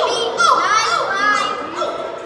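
Several children's voices chattering and calling out over one another, none of it clear speech.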